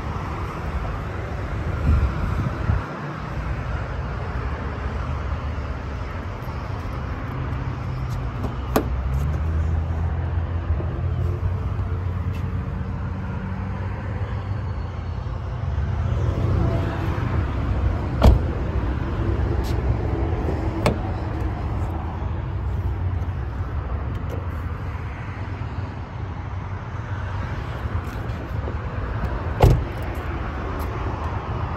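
A steady low rumble of outdoor noise on the microphone, with a few sharp knocks spaced through it. The clearest, about eighteen and twenty-one seconds in, fit the Sonata's rear door being handled, since it has just been opened to show the back seat.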